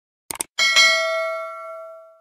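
A quick double mouse-click sound effect, then a single notification-bell ding that rings out and fades away over about a second and a half.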